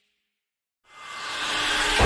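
Silence for almost a second, then a rising whoosh sound effect that swells steadily louder, the opening of an animated logo intro.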